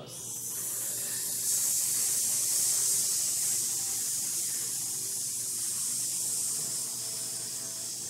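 A group of people hissing one long, steady exhalation through the teeth for about eight seconds, swelling a second or so in and easing off near the end. It is a singers' breath-control exercise that draws the exhale out.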